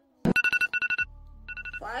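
Electronic alarm beeping: two quick runs of rapid, high, evenly pitched beeps, the wake-up alarm.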